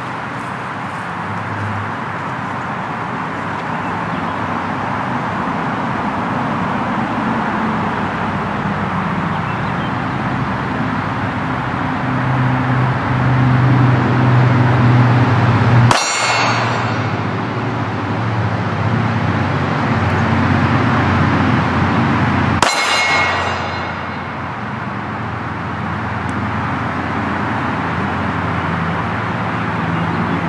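Two 9mm pistol shots from a Glock 19X, about six and a half seconds apart, each followed by the ringing clang of a steel target being hit. Under them runs a steady low rumble.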